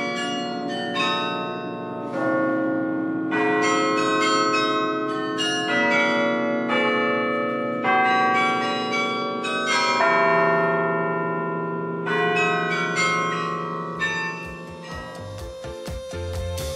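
Bells ringing: a steady run of struck bell notes, about two strokes a second, each ringing on under the next. A beat-driven music track comes in at the very end.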